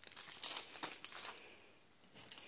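Clear plastic packaging crinkling as it is handled. The crackling is busiest in the first second and dies away by about a second and a half.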